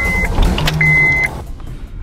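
Honda car's dashboard warning chime beeping twice, short steady high-pitched beeps, as the key is turned in the ignition, over a background of noise that drops away about a second and a half in.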